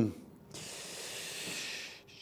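A man's long exhale: a steady, soft breathy hiss starting about half a second in and lasting over a second.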